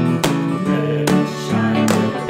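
Acoustic guitar strumming chords in a folk-style song, with no singing.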